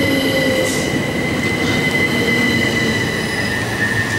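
Class 377 Electrostar electric train rolling close past along the platform as it slows to stop, with a steady high-pitched whine over the rumble of its wheels.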